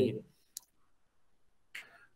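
A man's speech trails off, then video-call audio gated to dead silence. A single faint click comes about half a second in, and a brief faint sound near the end, just before he speaks again.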